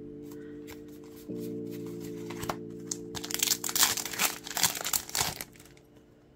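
Background music with held chords, over which, from about three seconds in, a trading-card booster pack's foil wrapper crinkles and tears in loud bursts for a couple of seconds. The music fades out near the end.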